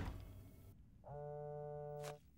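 A cell phone ringing: one steady electronic ring, about a second long, starts halfway through. Before it, the fading end of a loud thud.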